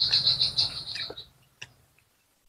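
A high-pitched chirping trill of rapid even pulses, lasting about a second, from a small animal; a single faint click follows.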